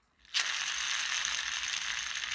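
Toy car friction motor whirring: its small plastic gear train and flywheel spinning at speed in a steady, high buzz that starts about a third of a second in.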